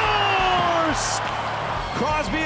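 An ice hockey TV announcer's excited goal call, one voice held for about a second and falling in pitch, over arena crowd noise. A short hiss comes about a second in.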